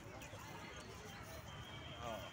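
Faint outdoor ambience with distant voices of people.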